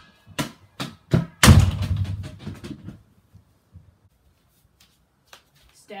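Inflatable yoga ball bouncing on a wooden floor: a few thuds coming closer and closer together, then a much louder hit about a second and a half in that rumbles on for over a second before dying away.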